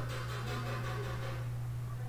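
A steady low hum with a faint hiss, the constant background noise of the recording setup.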